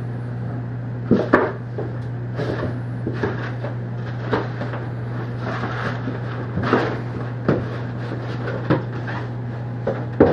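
Cardboard beer carton being handled and scraped as a cat pushes into it: irregular short rustles and knocks, about ten in all, over a steady low hum.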